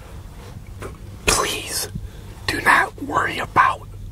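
A man whispering in two short stretches, the second longer, over a steady low hum.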